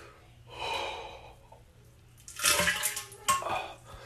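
A man breathing out a lungful of smoke: a faint breath about half a second in, then two loud, breathy rushes of exhaled air in the second half, the second starting abruptly.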